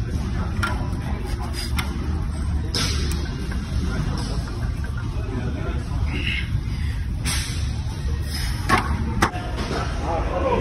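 A steady low rumble of background noise, with two short hissing bursts and a couple of light clicks late on.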